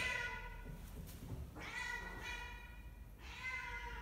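A domestic cat meowing: three long meows, each lasting about a second, with short pauses between them.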